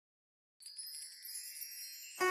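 Silence, then about half a second in a faint, high, shimmering wind-chime sound of many ringing tones: the lead-in of the video's intro music.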